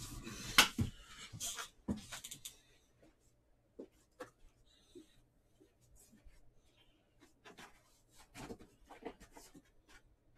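Light rustling with a sharp click in the first two seconds, then scattered faint clicks and ticks, with a small cluster near the end: handling sounds.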